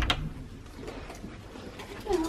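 Camera handling noise: a knock right at the start as the hand-held camera is moved, then low room tone.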